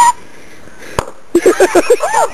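A single sharp knock about a second in, followed near the end by a quick run of short bursts of laughter.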